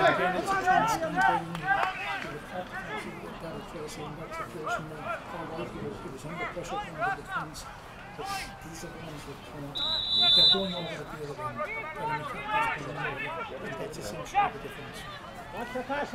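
Scattered shouts and talk of players and spectators across an open pitch, with no single voice holding it. A brief high steady tone sounds once, about ten seconds in.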